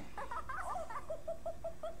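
A person giggling: high-pitched squeaky notes, then a quick run of short even laughs.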